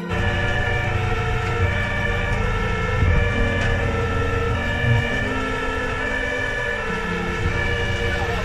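Fire engine's siren sounding in alternating tones that switch every second or so, heard from inside the crew cab over the low rumble of the truck's engine and road noise.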